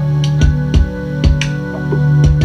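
Lo-fi beat: a Korg Volca Drum plays a regular kick pattern with sharp snapping snare or clap hits, over sustained chords on a Yamaha keyboard.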